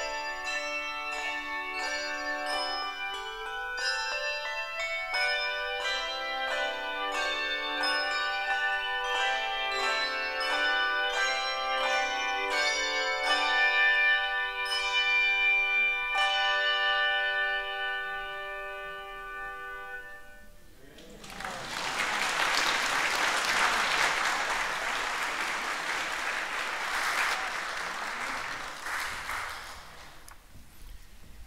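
Handbell choir ringing the closing bars of a piece, quick struck notes giving way to a final chord held and fading out about twenty seconds in. Then the congregation applauds for about eight seconds.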